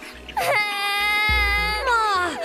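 A woman's voice acting a crying wail for a puppet character: one long high-pitched cry held for over a second, then breaking and falling away.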